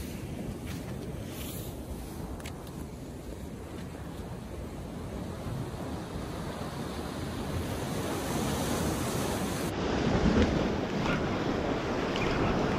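Ocean surf washing and breaking over jetty rocks, a steady rush of water that grows a little louder in the last few seconds, with wind on the microphone.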